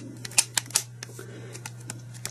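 Light plastic clicks and taps from an original Nintendo Game Boy being handled and turned over in the hands: a few sharp clicks in the first second, fainter ones near the end.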